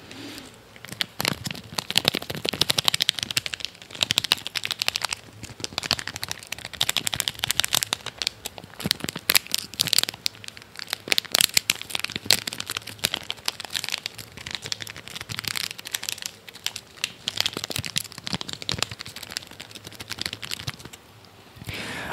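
Plastic wrapper of a Fini candy packet crinkling and crackling as it is handled close to the microphone, a dense run of sharp crackles that eases off near the end.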